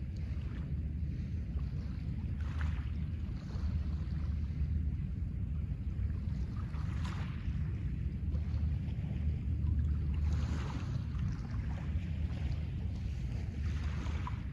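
Small waves washing onto a pebble shore every few seconds, under a steady low rumble of wind on the microphone.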